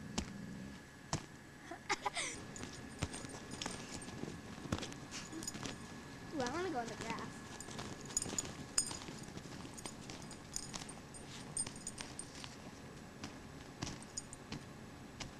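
Footsteps crunching through deep fresh snow, in irregular sharp crunches. About six and a half seconds in comes a brief rising-and-falling vocal sound, with a shorter one near two seconds.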